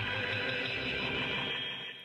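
A voice recording played back through an iZotope VocalSynth preset: a steady, held chord of many synthetic tones in which no words can be made out, easing off slightly near the end.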